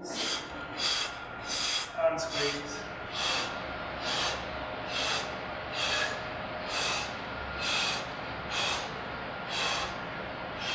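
A man breathing hard and fast under heavy exertion, forceful hissing breaths about one a second, while straining through a slow, high-intensity leg-press set. A sharp click about two seconds in.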